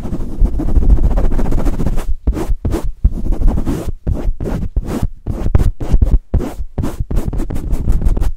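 Foam mic cover rubbed and pumped fast against the head of a Blue Yeti microphone, loud close-up handling noise. A continuous rub for the first two seconds, then quick strokes about three or four a second.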